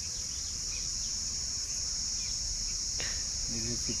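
Insects droning in one steady, unbroken, high-pitched chorus.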